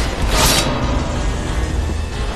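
Action film soundtrack: a short hissing swish about half a second in, then a steady low rumble with music underneath.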